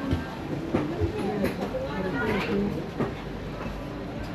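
Background voices of people talking in a busy covered market aisle, with a few sharp clicks and knocks at irregular moments.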